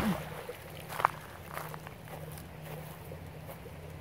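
A dip net splashing as it scoops through shallow, weedy pond water at the start, followed by quieter handling noise and one sharp tap about a second in.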